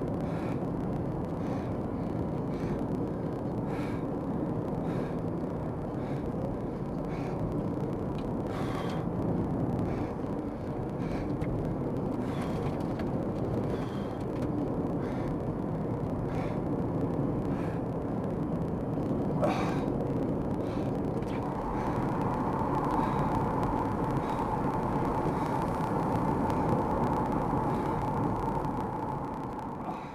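Heavy storm wind and vehicle road noise heard from inside the cabin while driving through a gustnado, with scattered sharp ticks of wind-blown material striking the vehicle. A steady higher whine joins about two-thirds of the way through.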